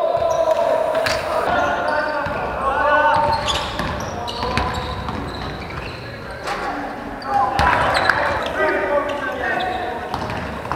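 Basketball bouncing on an indoor court amid players' voices calling out, in a large reverberant sports hall.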